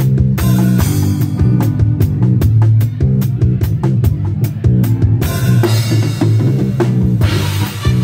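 Live reggae band playing an instrumental passage with no vocals: drum kit with kick, snare and rimshots keeping a steady beat over electric guitars and keyboard.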